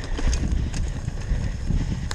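Downhill mountain bike ridden fast over dirt and grass: a steady low rumble of wind on the on-bike camera's microphone and tyres on the ground, with the chain and frame rattling in irregular sharp clicks.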